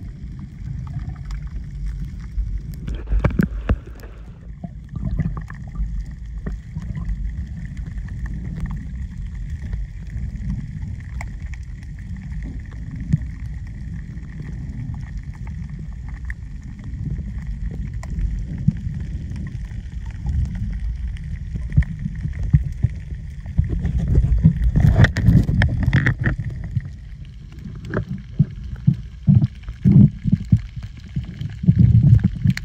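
Muffled underwater sound through a camera's waterproof housing: a steady low rumble of moving water, with scattered clicks and knocks. It grows louder with splashing knocks a little past the middle.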